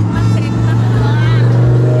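A motor vehicle's engine running close by, a steady low hum with even overtones, from road traffic.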